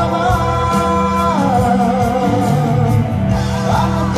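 A man singing a slow melody with long held notes into a microphone over amplified backing music with a steady bass and beat; one long note steps down in pitch about a second and a half in.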